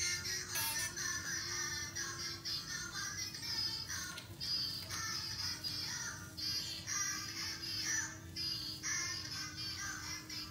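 A child's musical toothbrush playing a tinny, electronic children's song while in use, with a steady hum underneath.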